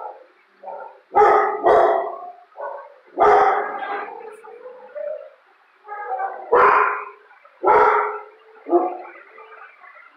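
A dog barking loudly, about six sharp barks at uneven gaps, with a few quieter sounds between.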